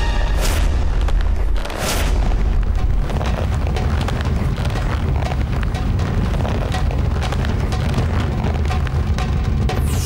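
Dramatic background score overlaid with a heavy, continuous low rumble and booming effect that starts suddenly, with a second hit about two seconds in. It plays as the ground is shown cracking open beneath the levitating figure. Near the end a falling whoosh begins.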